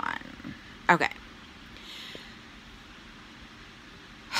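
Mostly quiet room tone, broken by one short vocal sound from a woman about a second in and a faint breath around two seconds.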